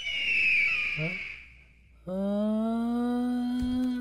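A high hiss that fades away over the first second and a half, then a cartoon character's voice holding one long hummed note that rises slightly in pitch for the last two seconds.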